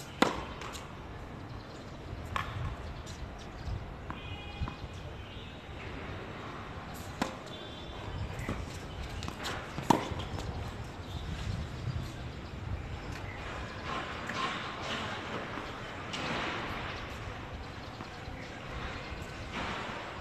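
Tennis racket striking a ball: one sharp, loud hit about a quarter second in, as a serve, then a few fainter hits spaced seconds apart over the next ten seconds, over a steady low outdoor background.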